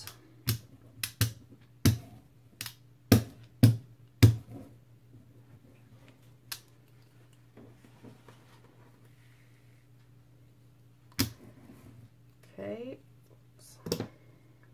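Short sharp taps as fingers press a paint-soaked felt stamp down onto burlap over a cutting mat: seven in the first four seconds, then a few isolated ones. A low steady hum lies underneath.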